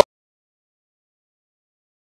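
Total silence: the studio talk cuts off abruptly at the very start and no sound follows.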